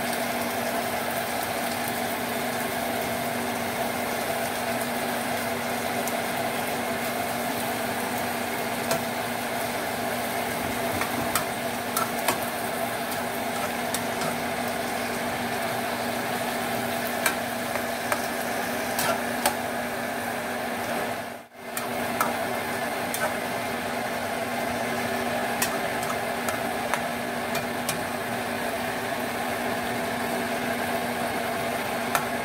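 A chicken and vegetable stir-fry sizzling in a pan on a gas stove, with occasional sharp clicks over a steady hum. The sound briefly drops out a little over two-thirds of the way through.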